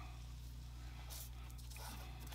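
Quiet room tone with a steady low hum, and a faint brief rustle about a second in from fingers handling fine thread on a small model part.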